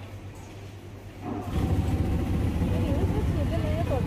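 A quiet low hum for about a second, then a louder low rumble of vehicle and road noise that starts about a second and a half in, with a faint voice over it.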